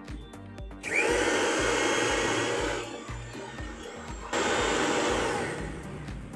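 Bajaj mixer grinder motor, fitted with a new armature, switched on twice in short bursts: first for about two seconds, spinning up with a brief rising whine, then a shorter run a second and a half later. It is a test run of the replaced armature. Background music with a steady beat plays throughout.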